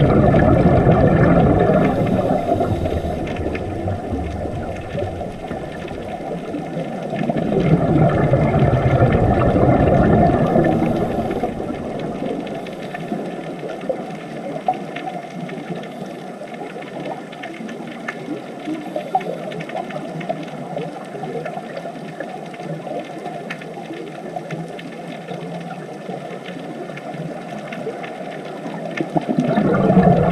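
Underwater ambience picked up by a submerged camera: a muffled, low rush of water and scuba divers' exhaled bubbles with faint crackling throughout. It swells louder about a third of the way in, then settles to a steadier, quieter rush.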